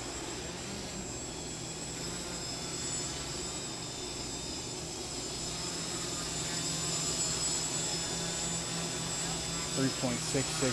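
Quadcopter's electric motors and propellers humming steadily with several held tones, growing louder over the last few seconds as it flies back close overhead.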